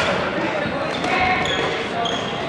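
Badminton players' voices echoing in a sports hall, with a sharp knock right at the start. Brief high-pitched squeaks come near the end, typical of sneakers on the wooden court floor.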